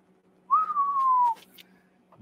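A single clear whistle-like tone, just under a second long, starting about half a second in and sliding slowly down in pitch.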